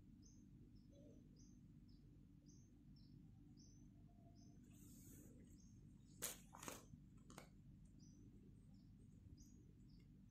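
Near silence with a faint bird chirping, short high chirps repeating about twice a second. Three soft clicks come about six to seven seconds in.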